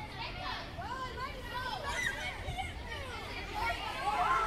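A crowd of children chattering and shouting at play, many high voices overlapping.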